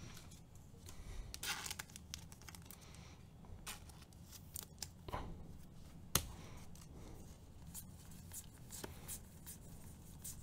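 Faint rustling and scattered sharp clicks of baseball trading cards being flipped through in the hands and set down on a table. The sharpest click comes about six seconds in, over a low steady hum.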